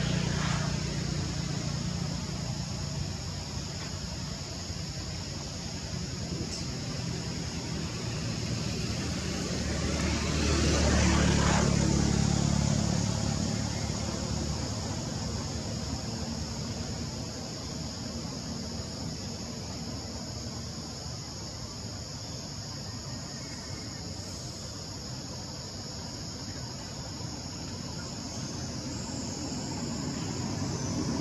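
A motor vehicle passing, rising to its loudest about eleven seconds in and then fading, over a steady high insect drone.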